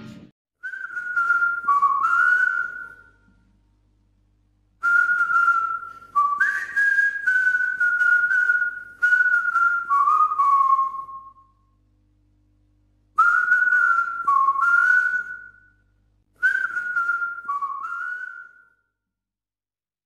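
A tune whistled in four short phrases, each made of a few notes that step and slide up and down within a narrow range, with short silences between the phrases.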